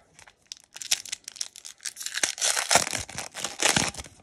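Foil Pokémon booster pack wrapper being torn open and crinkled: a run of ripping and crinkling strokes that grows louder through the second half and stops just before the end.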